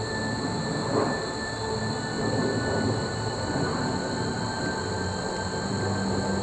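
Outdoor field ambience: a continuous rough, rumbling noise with a steady high-pitched drone of insects over it, and a brief louder rustle about a second in.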